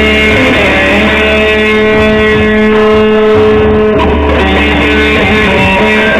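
Electric guitar played loud through an amplifier: long held notes and chords that change every second or two.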